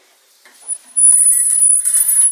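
Shower curtain being pulled open, its rings scraping along the rod with a loud, high-pitched squeal that starts about halfway through and lasts a little over a second.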